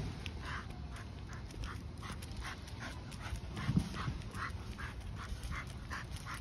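Pit bull panting on a walk, short breaths about two or three a second, over a low rumble, with a brief low thump just before four seconds in.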